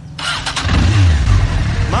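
Motorcycle engine cranked on its electric starter, catching about half a second in and then running with a low rumble and a short rev.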